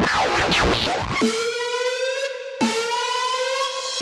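Hardcore gabber track with no vocal in this stretch: a siren-like synth note with many overtones is held and rises slowly, restarting about every one and a half seconds, with falling sweeps in the first second.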